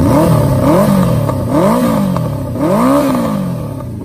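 Honda CB400 Four's air-cooled inline-four engine revved with four quick throttle blips about a second apart, each rising and falling back toward idle, the last one held a little longer. The exhaust note is very clean.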